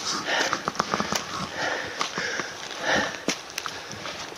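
A person breathing hard, a loud breath roughly every second, while walking on a steep forest slope. Footsteps crunch on dry leaf litter and loose stones and snap small twigs in quick, sharp clicks between the breaths.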